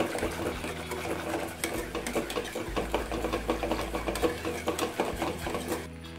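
Wire whisk beating a milk mixture in a stainless steel pot: a rapid, steady run of light clicks as the wires strike the pot.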